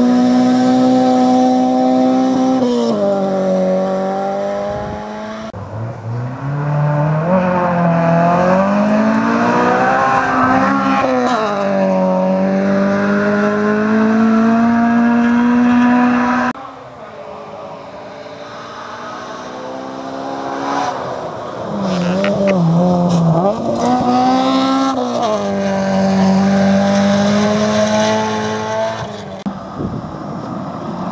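Front-wheel-drive rally cars passing one after another at full throttle: engines held at high revs, the pitch dropping and climbing back again and again with gear changes and lifts. The sound breaks off abruptly twice as one car gives way to the next.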